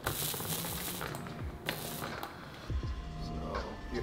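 A foam paint roller rolling over wet epoxy resin on a carbon-fibre cloth layup, a soft crackly rub with faint clicks, over background music. About two-thirds of the way in the rolling stops and a low steady hum takes over.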